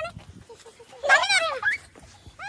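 Young children's high-pitched excited squeals: a brief one at the start and a loud one about a second in that rises and then falls in pitch.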